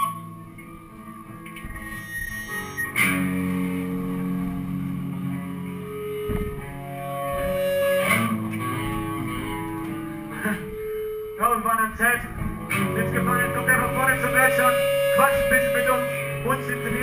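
Live melodic hardcore band in a quieter passage: clean, sustained electric guitar notes over bass, with a few sharp drum or cymbal hits. About eleven seconds in a voice comes in over the microphone and the band grows fuller.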